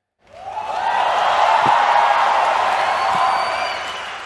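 Audience applauding and cheering, swelling in quickly just after the start, holding steady and fading out near the end.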